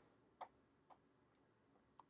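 Near silence with a few faint short clicks, two in the first second and one more at the very end.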